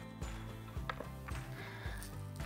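Soft background music with sustained low tones, under a few faint clicks of a knife slicing through raw beef fat onto a cutting board.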